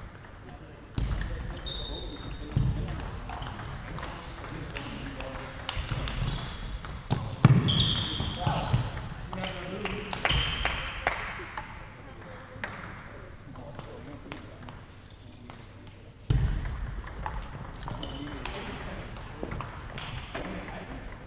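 Table tennis balls clicking off bats and tables in rallies, with irregular sharp taps throughout. A few dull thumps stand out, the loudest about seven seconds in, and voices are heard in the background.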